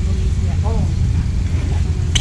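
Wind buffeting the camera microphone: a loud, steady low rumble, with faint distant voices about half a second in.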